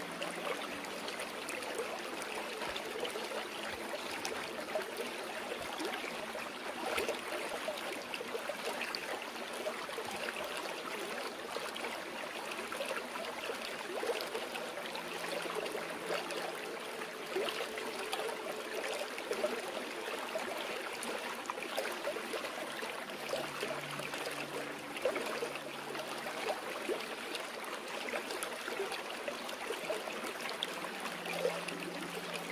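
Flowing water, a steady babbling and trickling like a stream running over rocks.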